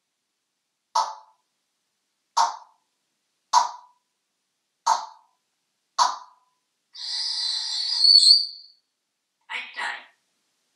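An African grey parrot making five short, sharp calls about a second and a quarter apart, then a longer, harsher call lasting nearly two seconds, with another brief sound near the end.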